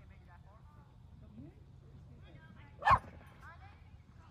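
A dog barks once close by, short and sharp, about three seconds in, over faint distant voices across the field.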